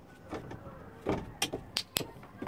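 A dog's feet knocking and scraping on an incline board: about five short, sharp knocks, the loudest just over a second in.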